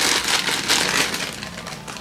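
Thin clear plastic film being crumpled by hand: a dense crackling that tapers off through the second half.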